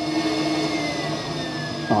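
GMC Envoy's electric secondary air injection pump running, a steady whir with a faint whine that slowly falls in pitch.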